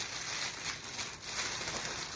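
A clear PVC shrink bag rustling and crinkling faintly as hands work items into it, with a few light clicks of the plastic.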